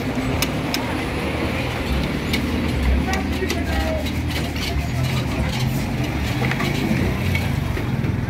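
A vehicle engine running low and steady, with voices in the background and scattered short clicks and knocks as bags are handled at the car's open boot.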